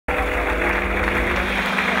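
Audience applauding steadily, with a few held low notes underneath that fade out a little before the end.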